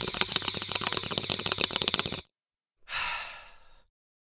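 Logo sound effect: about two seconds of crackling hiss full of rapid clicks, then, after a brief pause, a breathy exhale that fades away.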